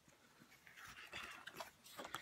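Faint rustling of a sheet of printed card stock being lowered and put aside, starting about half a second in.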